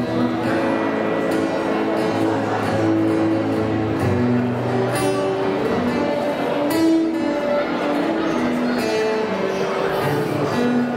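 Cutaway acoustic guitar played as an instrumental, a picked melody of held notes over strummed chords.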